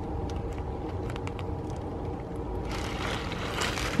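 Steady low mechanical hum throughout, with a rustle of leafy greens being pushed against a wire rabbit cage in the last second or so.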